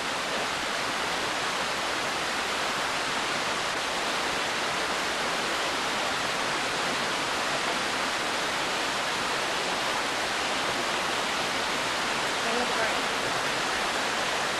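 Steady, even hiss that holds at one level throughout, with no other distinct sound.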